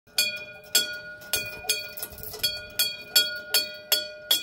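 Small red metal playground bell rung by hand, struck about ten times in a quick uneven rhythm, roughly two to three strikes a second, each strike ringing on in a clear bell tone.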